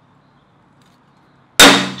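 A hammer strikes a steel center punch once on a quarter-inch steel plate, about one and a half seconds in: a sharp metallic clang with a brief ring, punching a hole centre to be drilled.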